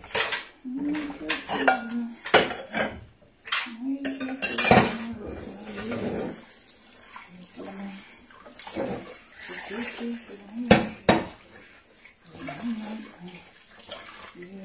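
Dishes and cutlery clattering and clinking in a kitchen sink as they are washed by hand, with a splash of running water now and then.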